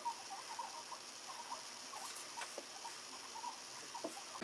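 Faint, irregular scratchy ticks of a small eyeshadow brush being worked over the eyelid, over a low hiss.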